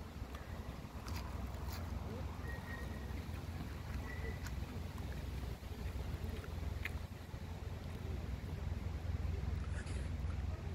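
Steady low wind rumble on a phone's microphone, with a few faint clicks and two short, faint high tones in the middle.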